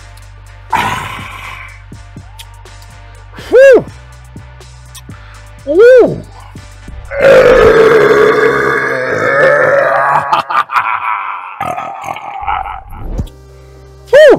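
A man's long, loud burp, lasting about five seconds from a little past halfway: the gas of a just-chugged two-litre bottle of carbonated Sprite. Before it, over a music beat, come two short swooping tones.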